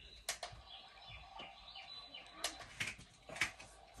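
Recorded birdsong, faint short chirps, playing from the built-in sound unit of a Cuggle baby swing chair, with a few light clicks.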